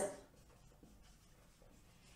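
Marker pen writing on a whiteboard: faint scratching strokes.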